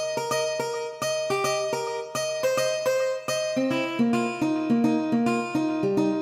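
Sampled acoustic guitar in FL Studio's DirectWave sampler playing back a melody of plucked notes in a steady run. Lower notes join the line about halfway through.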